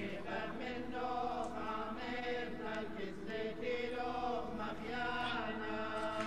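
Background choral music: voices chanting long held notes that shift slowly in pitch.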